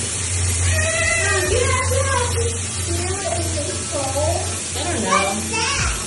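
Children's high voices and laughter, with a laugh about halfway through, over a steady rush of water in a bubble-filled bathtub.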